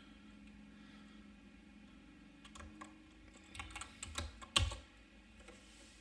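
Keystrokes on a computer keyboard. The first half is nearly quiet, then a short run of typing starts about halfway through, with one louder key-press near the end.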